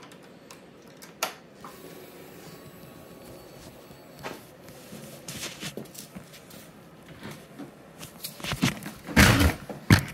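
A phone being handled and moved down toward the floor: faint scattered clicks and rustling, then loud rubbing and knocking on the microphone in the last second and a half.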